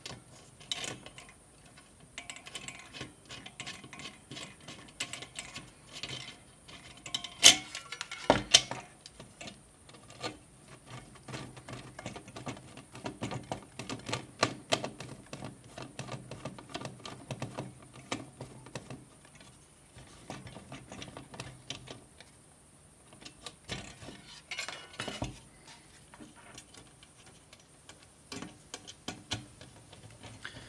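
Small metal bolts and nuts clicking and rattling against a plastic fan cover as they are fitted and turned with a screwdriver, with two louder knocks about seven and eight seconds in.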